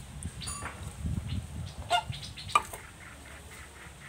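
Thick fermented rice-and-milk mixture being poured from a mug into a plastic bottle, a low sloshing in the first half. A few short calls from farmyard fowl sound in the background, one about half a second in and two more around the middle.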